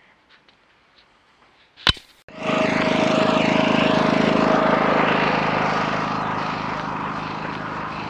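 A few faint clicks and one sharp click, then a steady motor running at speed with wind noise on the microphone, which cuts in suddenly a little over two seconds in and slowly eases off.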